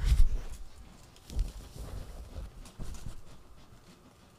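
Low thumps and rustling close to a microphone. The thumps are loudest in the first half-second, with weaker ones scattered through the middle.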